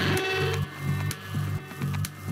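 Techno music playing: a pulsing bassline a little over two beats a second with hi-hat ticks, and a bright synth riff that fades out about half a second in.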